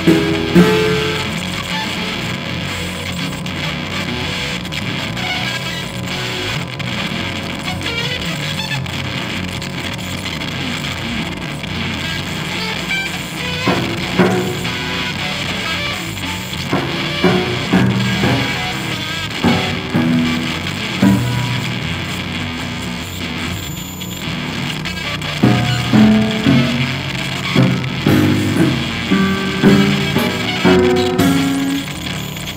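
Free improvised music: a steady, dense electronic noise layer, over which scattered plucked and struck notes from electric guitar and prepared piano enter about halfway through and grow denser near the end.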